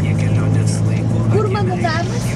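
Car engine and road noise heard from inside the cabin while driving: a steady low drone, with a person's voice coming in near the end.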